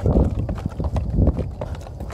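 Footsteps in quick, irregular succession, a run of knocks over a low rumble.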